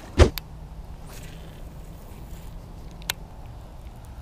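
A single short thump about a quarter second in, followed by a faint click. Then low handling and outdoor background noise, with one sharp click about three seconds in.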